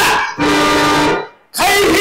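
Bayalata folk-theatre singing with instrumental accompaniment. A voice ends a line, a steady instrumental chord is held for under a second, and after a brief pause a loud voice starts again near the end.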